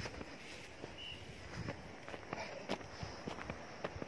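Faint, irregular footsteps and crunches of someone moving through dry hillside brush, with one short high chirp about a second in.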